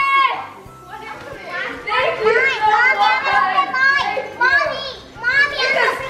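Excited children's voices shouting and squealing over one another in cheering and chatter, quieter for a moment about a second in, then loud again.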